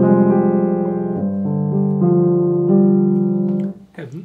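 Grand piano played in slow, sustained chords, the harmony changing every second or so; the playing stops shortly before the end and the last chord dies away.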